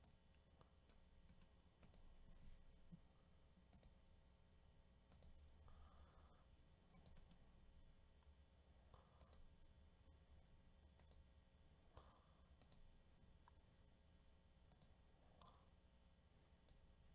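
Near silence with faint computer mouse clicks scattered through it, as a spreadsheet is edited.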